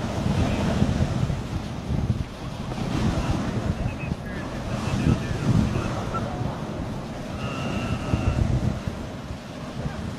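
Wind buffeting the microphone over the hiss of dog-sled runners sliding on snow while the dog team pulls at a steady run. Two faint high whines come through, about four seconds in and again near eight seconds.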